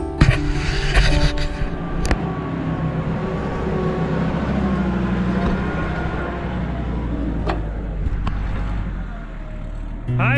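Farm tractor engine running steadily in the background, with rustling and a few sharp knocks from a hand-held camera being grabbed and moved, the loudest near the start and about two seconds in.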